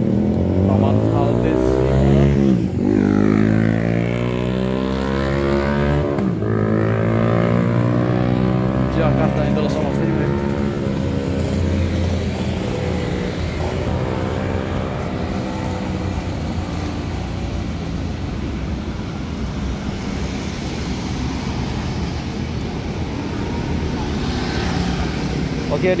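Road traffic of motor scooters and motorcycles passing on a city street, two of them going by close at about two and a half and six seconds in, then a steady traffic hum.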